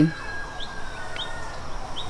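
Rural outdoor ambience with three short, high bird chirps spaced about half a second apart, over a faint long tone that slowly falls in pitch.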